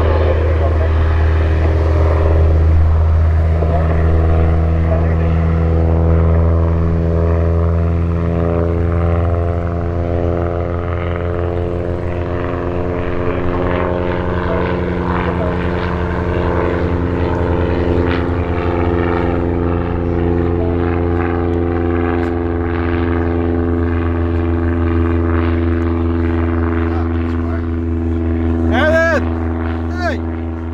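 Banner-towing single-engine light aircraft, its piston engine and propeller droning steadily as it flies past. A short whistling chirp sounds near the end.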